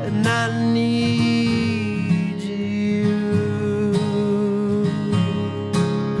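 Solo acoustic guitar played live, with picked and strummed string attacks over long held notes.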